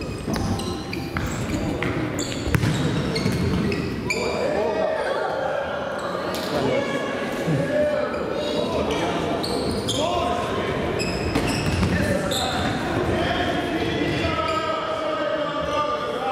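Children's voices shouting and calling, echoing around a large sports hall. Thuds of a football being kicked and bouncing on the wooden floor come a few times a second in the first few seconds.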